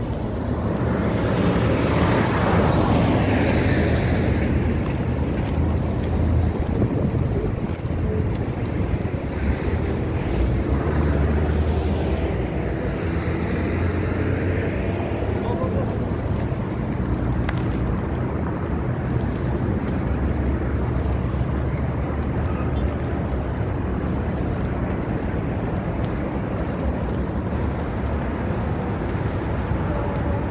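Wind buffeting the microphone over steady road noise, with vehicles passing, most clearly about two seconds in and again around twelve to fifteen seconds in.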